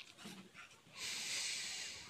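A person breathing out through the nose close to the microphone: one breath about a second long, starting about halfway in.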